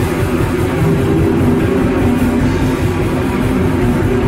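Raw black metal: distorted electric guitars playing a sustained chord riff, with drums beneath.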